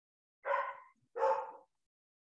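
A dog barking twice, about two-thirds of a second apart, heard over a video call.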